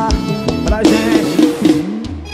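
Live forró band music: drum kit hits with bass guitar and short instrumental lines, in a brief instrumental gap between sung phrases.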